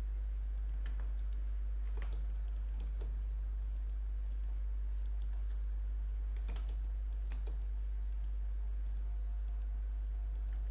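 Scattered clicks of a computer mouse and keyboard, a few sharper ones about one, two and three seconds in and a cluster between six and a half and seven and a half seconds, with fainter small ticks between. Under them runs a steady low electrical hum.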